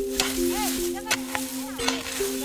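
Background music with long held notes over a steady hiss, with scattered clicks and crackles.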